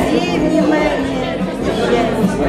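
Speech: a woman's voice reading aloud over the chatter of many people in a large hall.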